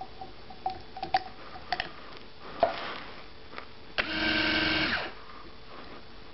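Small electric capper motor spinning the liner chuck for about a second, screwing a cap onto a 15 ml plastic tube, then stopping suddenly. A few light plastic clicks come before it as the tube is fitted into the chuck.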